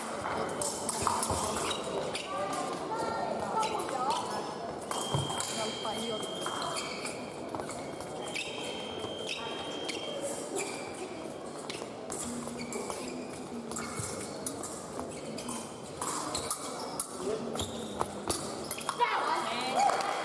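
Épée fencing in a large echoing hall: feet stamping on the piste and blades clicking against each other, with voices in the hall and a high steady electronic tone sounding twice in the middle. The action turns livelier and louder near the end as a touch is scored.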